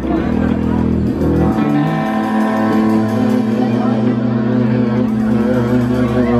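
Live band opening a slow song: bowed upright bass and electric guitar playing long, held notes.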